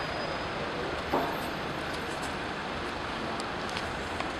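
Steady street traffic noise: an even rumble and hiss of passing road traffic, with one short louder sound about a second in.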